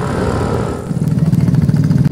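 Motorcycle engines running as riders go by on the road. About a second in, a closer small engine takes over, running with a rapid, even beat.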